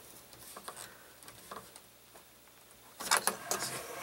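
A wrench tightening a nut on a steel bracket: a few faint light clicks, then about three seconds in a short spell of louder metal clinking and rattling.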